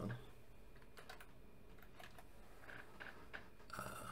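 Computer keyboard typing: a few faint, separate key taps as a short stock ticker symbol is entered.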